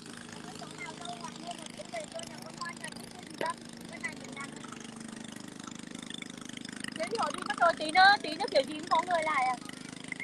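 Steady low hum of a riverboat's engine running at an even speed, with no change in pitch.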